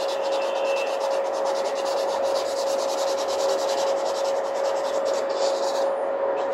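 Pencil scratching on paper in quick, rapid back-and-forth shading strokes, pausing briefly near the end, over a steady hum.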